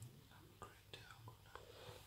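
Near silence: room tone with a few faint scattered ticks.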